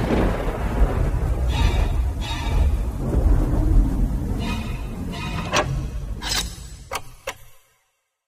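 A radio-show transition sting: music over a heavy thunder-like rumble, with several short sharp hits near the end before it fades out to silence.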